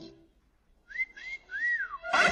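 Someone whistling three short high notes, starting about a second in: the first two rise and hold briefly, and the last is longer, rising and then falling away.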